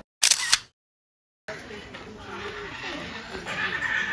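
A camera shutter sound, two quick loud clicks, then about a second of dead silence, followed by faint voices over outdoor background.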